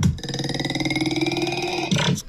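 A long, buzzy pitched sound from a TikTok clip playing on a computer, held for nearly two seconds with its pitch rising slightly.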